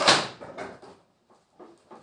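Ankara fabric rustling in a short swish as the top is pulled and adjusted on a dress form, loudest at the start and fading within about a second.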